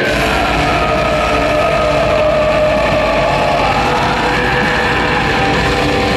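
A black metal band playing live at full volume, with distorted guitars, bass and drums forming a dense wall of sound. The bass and drums come in right at the start, over guitar that was playing before. A long held note bends slowly in pitch over the first few seconds.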